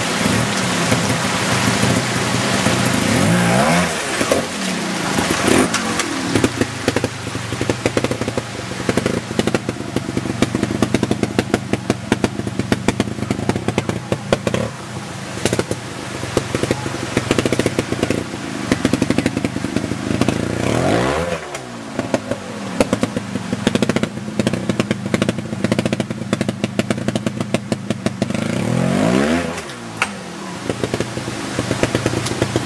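Trials motorcycle engine blipped and revved in short bursts as the bike is worked over rocks, its revs rising and falling several times: once near the start, again about two-thirds through and once more near the end. Beneath it runs the steady rush of a creek.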